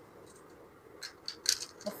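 Small plastic clicks and taps of Lego pieces being picked up and pressed together by hand: a few short, sharp clicks in the second half.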